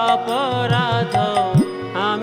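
Devotional kirtan music: a held drone with a wavering melody line bending over it, low drum strokes that slide up in pitch, and bright cymbal strikes.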